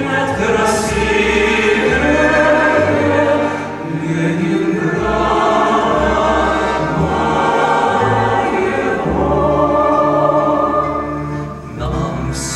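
Mixed vocal ensemble of men and women singing a song in close harmony, accompanied by acoustic guitar, with a short pause between phrases near the end.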